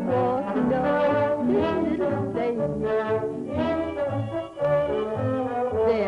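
Orchestral cartoon score with brass to the fore, playing a bouncy tune over a steady bass beat of about two notes a second.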